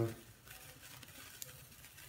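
A sparkler candle on a birthday cake fizzing faintly, with a faint click about one and a half seconds in.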